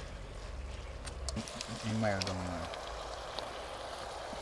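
Pot of callaloo greens steaming on a coal stove: a steady low hiss, with a few light clicks and one short spoken word.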